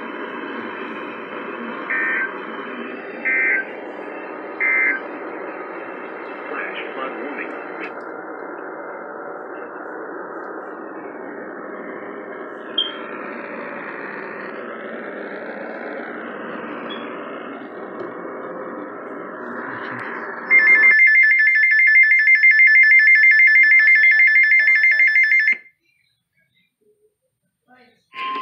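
Radio hiss and static with three short beeps in the first few seconds. Then a weather radio's alert alarm sounds, a loud, rapidly pulsing high-pitched beep for about five seconds, and cuts off suddenly.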